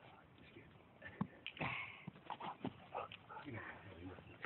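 A dog whining and yipping, fairly quiet, in short bursts that start about a second in.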